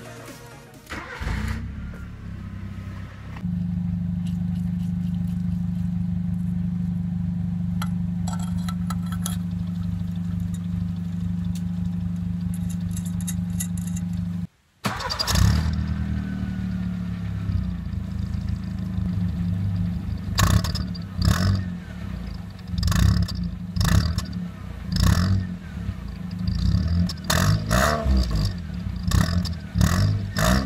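Car engine cranked and started about a second in, then idling steadily. From about 20 s on it is revved in repeated short blips through an exhaust tip fitted with a clamp-on turbo-sound whistle simulator.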